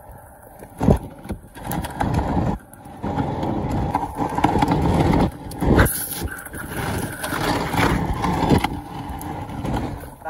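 Stunt scooter wheels rolling fast down a rough asphalt road: a steady rumble of wheels and wind, with a few sharp knocks from bumps in the surface.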